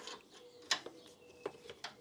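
Hand ratchet giving a few sharp, irregular clicks as a just-loosened 10 mm bolt is wound out of a bracket.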